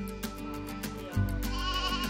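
Background music with a regular beat, and a lamb bleating once about one and a half seconds in, a short quavering call.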